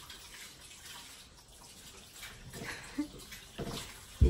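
Faint wet squishing of hands kneading soft gulab jamun dough, with a few louder squelches in the second half.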